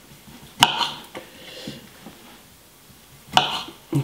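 Kitchen knife knocking on a wooden cutting board as cherry tomatoes are cut in half: a sharp knock about half a second in, a faint one soon after, and another short run of knocks near the end.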